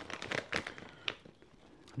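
A plastic chip bag being handled: a few soft, short crinkles in the first second.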